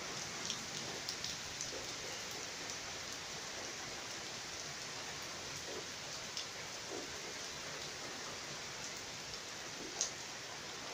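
Steady rain falling on trees and leaves, with a few sharper drop hits scattered through it, brought by an approaching tropical cyclone.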